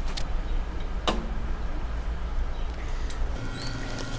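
Steady low rumble of outdoor background noise with two sharp clicks in the first second or so. Near the end it gives way to a steady electrical hum.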